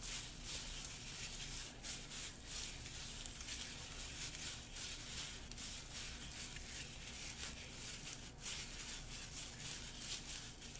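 Faint rustling and a few light clicks from plastic-gloved hands straining at a cinnamon stick, trying to snap it in half; the stick does not break.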